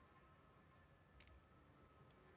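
Near silence broken by two faint, small clicks, the clearer one about a second in: jewelry pliers and metal findings clicking as a wire loop holding a charm is squeezed closed.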